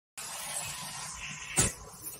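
Quiet room noise with one short thump about one and a half seconds in.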